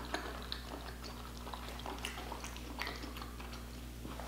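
Quiet chewing of seafood with a few soft, scattered mouth clicks and smacks, over a steady low hum.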